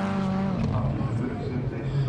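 Rallycross cars' engines running at race pace on the loose-surface section. The engine note holds steady, then drops in pitch about half a second in and carries on lower.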